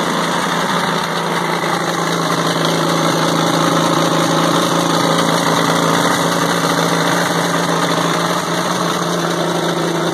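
Caterpillar RD4 bulldozer's four-cylinder diesel engine idling steadily, freshly started after 20 years standing; its pitch settles slightly lower about two seconds in.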